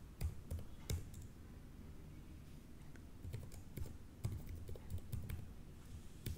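Typing on a computer keyboard: a few keystrokes in the first second, a pause, then a quicker run of keystrokes from about three seconds in.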